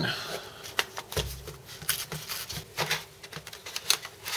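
Card packaging of a metal model kit being torn open by hand: a run of crackles and rips, with a dull thump about a second in.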